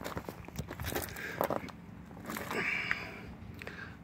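Footsteps and shuffling on loose gravel: a run of irregular crunches.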